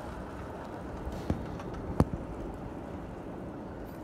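Steady background noise of a city street at night, with two sharp clicks a little over a second in, the second one louder.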